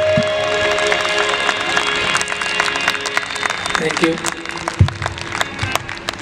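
Audience clapping as the last held note of the qawwali music dies away in the first second or two, with voices talking through the applause.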